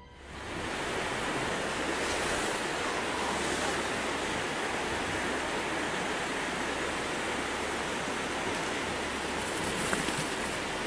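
Steady rush of a river's flowing water, fading in over the first half-second and then holding at an even level.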